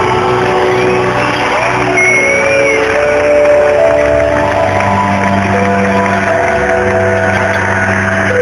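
Loud live concert music heard from within the audience in a large hall: long held keyboard-like notes that step to new pitches every second or so over a steady low bass.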